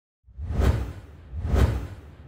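Two whoosh sound effects about a second apart, each swelling and fading over a deep low rumble, accompanying an animated logo intro.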